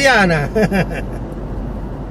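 Steady low road rumble inside a moving car's cabin.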